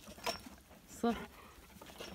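A woman's voice says "slow" once, calmly, over faint outdoor background noise, with a brief light click shortly before.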